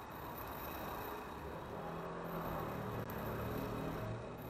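Quiet background noise with a faint low hum that grows slightly louder about halfway through.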